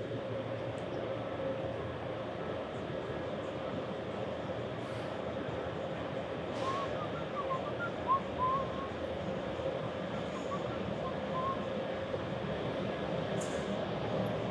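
Steady background hum of a large factory hall, with a faint steady tone running through it. A few faint short chirps come and go in the middle.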